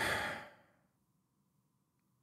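A man's single audible breath, noisy and without voice, lasting about half a second.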